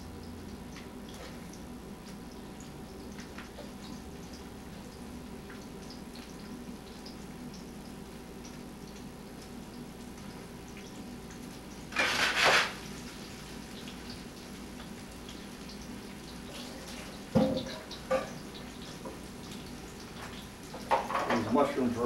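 Peppers and mushrooms frying in a pan on an electric stove: a low, steady sizzle with faint crackles over a background hum. A brief louder noise comes about halfway through, and two sharp knocks come a few seconds later.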